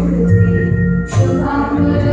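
Music with choral singing, sustained sung notes with a short break about a second in.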